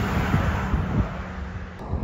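Wind blowing across the microphone in uneven low gusts, over a steady low hum.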